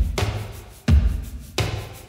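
A drum loop played back through a reverb plugin: sharp hits with a heavy low end, each trailing off in a reverb tail. One hit falls at the start, another about a second in, and a third past the middle.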